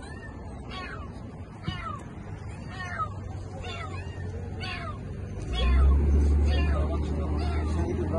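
A cat trapped in a car's engine compartment meowing over and over, short falling calls about one every second or less. A low rumble comes in about five and a half seconds in and is the loudest sound.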